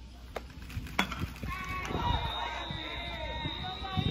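One sharp crack of a bat hitting a baseball about a second in, then distant voices around the ballpark.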